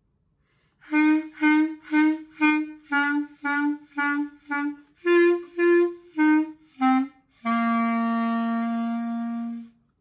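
Solo B♭ clarinet playing a melody of about a dozen short separate notes, roughly two a second, then closing on a long held low note that stops cleanly.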